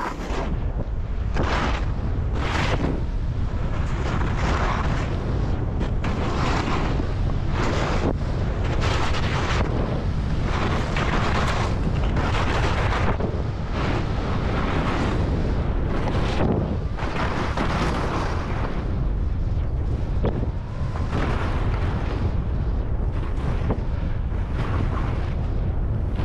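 Wind buffeting a helmet-camera microphone during a fast powder ski descent, a steady low rumble, with the hiss of skis running through snow swelling roughly once a second.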